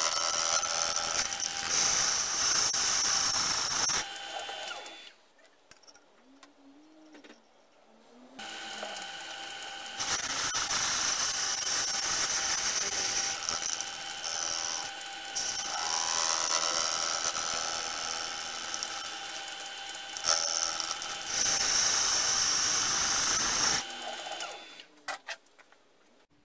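Metal lathe turning an aluminium pulley while a boring tool cuts inside its bore, opening out the pressed-in bush. A high hissing cutting noise rides over the lathe's steady whine. It comes in three spells of a few seconds each, with a few seconds of near silence after the first.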